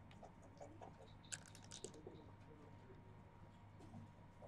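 Faint clicking of backgammon checkers and dice on the board in a quiet room, with a short cluster of sharp clicks about a second and a half in.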